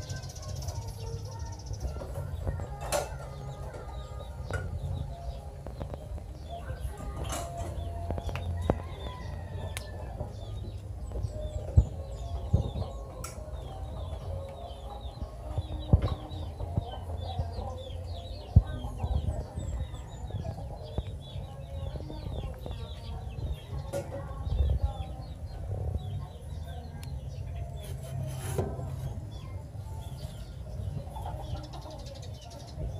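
Birds around a pigeon shelter: clucking and many short high chirps through much of the second half, over a steady low rumble. A few sharp knocks near the middle are the loudest events.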